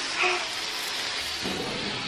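A lit sparkler fizzing and crackling steadily, with a short muffled vocal sound near the start.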